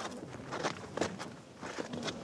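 Footsteps of a barefoot person walking on sandy ground, several short irregular crunching steps.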